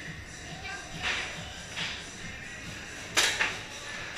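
Background music with a steady beat, over which come short hissing bursts about one and two seconds in and two sharp pops just after three seconds, the loudest sounds: shots from compressed-air tagball markers.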